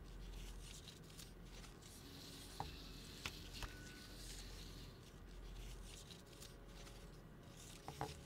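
Faint rubbing and rustling of a 35mm film strip being unwound by hand from a reel, with a few light clicks about three seconds in, over a low steady hum.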